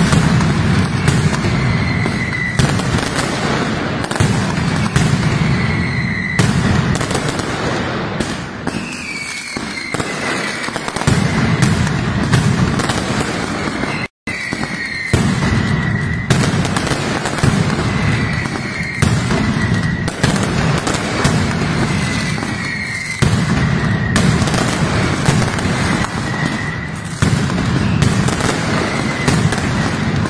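Mascletà firecracker barrage: a dense, continuous rattle of masclet bangs with a heavy low rumble, crossed every second or two by pyrotechnic whistles that drop in pitch. The sound breaks off for a split second near the middle.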